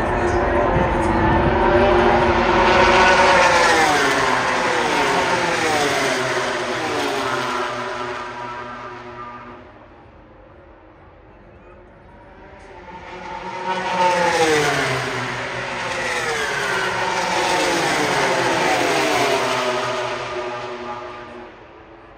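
MotoGP race bikes' four-cylinder engines screaming past at speed in two waves, several bikes each time, every engine note falling in pitch as it goes by. A lull comes just before the halfway point, then the second group passes.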